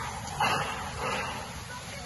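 Wind from a small whirlwind rushing on the microphone, with two short, sharp cries about half a second and a second in.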